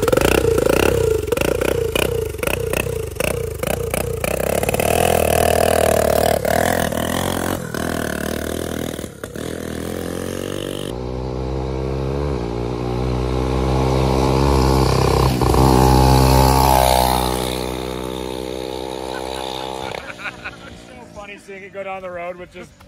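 Small turbocharged go-kart engine revving hard and pulling away, its note rising and dipping through gear changes as the kart runs along the road. It is loudest about two-thirds of the way through, then falls off.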